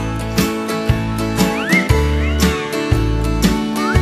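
Instrumental passage of a country song: a band with a steady drum beat and bass, and a lead instrument sliding up and down in pitch about halfway through.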